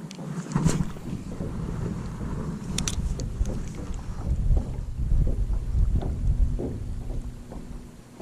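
Wind rumbling on the microphone in an open fishing boat while a spinning reel is wound slowly, with a couple of sharp clicks about three seconds in.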